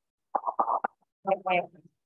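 A person's voice in two short bursts, with dead silence between them.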